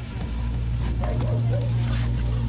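A three-month-old hyena cub gives a few short high calls, each rising and falling, about a second in, over a low steady drone.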